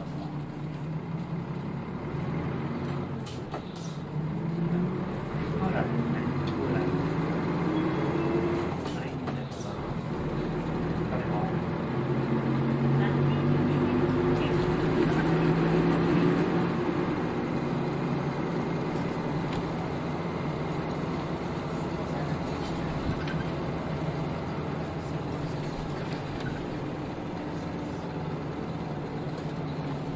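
Nissan Diesel KL-UA452KAN city bus's diesel engine heard from inside the bus, pulling up in pitch twice as the bus accelerates. The second pull peaks about sixteen seconds in, then the engine settles into a steadier drone. There is a clunk about three seconds in and another about nine seconds in.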